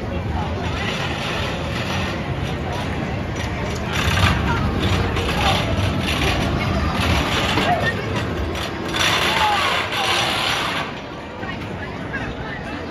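Spinning roller coaster car running along its steel track, its rushing rumble swelling in surges from about four seconds in and loudest near the end, mixed with riders' shouts and crowd chatter.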